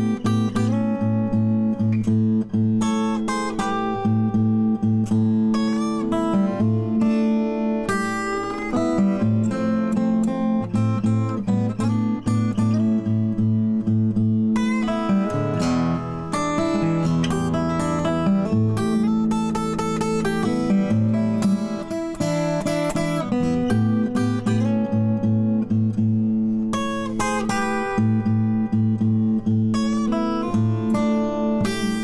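Recording King ROS-16 12-fret, slotted-headstock acoustic guitar played in old-fashioned fingerstyle blues: a steady thumbed bass note pulses under picked treble notes. Around the middle the bass moves to a lower held note for a few seconds before the pulsing pattern returns.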